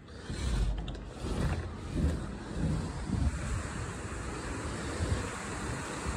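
Heavy rain pouring steadily, with low buffeting rumbles of wind on the microphone in the first couple of seconds.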